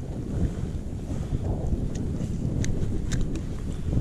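Wind buffeting the microphone, a steady low rumble, with a few faint clicks in the second half.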